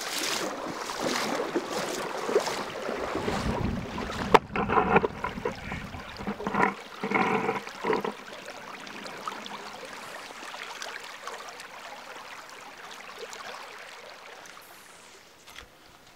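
Water of a shallow river splashing and running, with a sharp click a little over four seconds in and a few brief pitched sounds soon after; then a steady run of water that slowly grows quieter.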